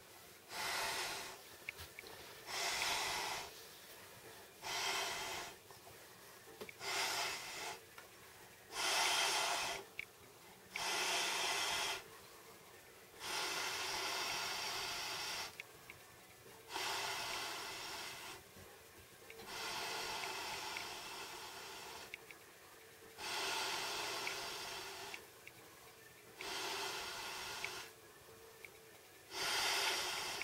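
Air bed being blown up by mouth through its one-way valve. Each exhaled breath rushes into the valve, short at first and then long breaths of two to three seconds, with quieter gaps for inhaling between.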